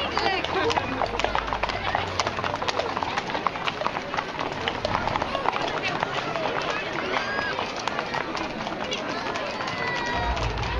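Many horses' hooves clopping on a brick-paved street at a walk, irregular overlapping clicks, under a crowd's steady chatter.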